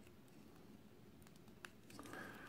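Near silence: faint room tone, with a couple of faint clicks late on as a small plastic toy quadcopter is handled.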